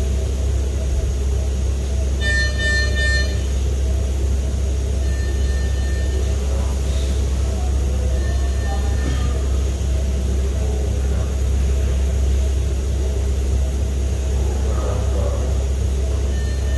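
Electronic beep from hospital medical equipment, a high tone about a second long repeating roughly every three seconds, loudest about two seconds in, over a steady low hum.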